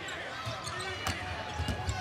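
Basketball bouncing on a hardwood court, a few low thumps in the second half, over the steady chatter of an arena crowd.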